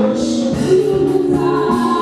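Church choir singing gospel music.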